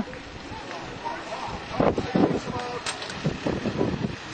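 Distant voices shouting across an open space, faint against a steady rush of wind on the microphone.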